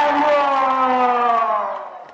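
Several sustained tones sliding slowly down in pitch together and fading out near the end, played over a concert sound system.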